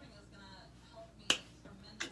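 Finger snapping: one sharp, loud snap about a second and a half in and another right at the end, part of a slow, even beat of snaps.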